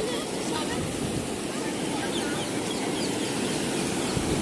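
Ocean surf washing steadily in over shallow sand.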